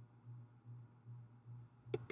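A faint low hum that swells and fades a few times a second, with one sharp click near the end.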